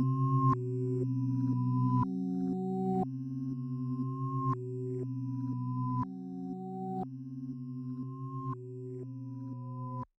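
Instrumental outro of a hip-hop beat: sustained, pure-toned synthesizer notes over a synth bass line, the notes changing about every second with small pitch bends, and no drums. The music fades gradually.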